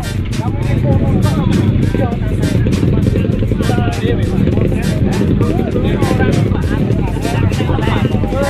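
Dirt bike engine revving hard as it climbs a steep dirt hill, with people shouting over it.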